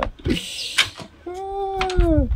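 A man's voice: a breathy sound, then a long held vocal call that drops in pitch at its end.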